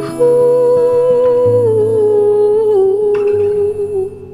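A woman's wordless hummed vocal, one long line that comes in just after the start and drifts slowly down in pitch, over acoustic guitar.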